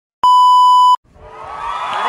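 A TV colour-bars test-tone beep: one steady, buzzy 1 kHz tone lasting under a second that cuts off sharply. About a second in, room sound with voices fades up.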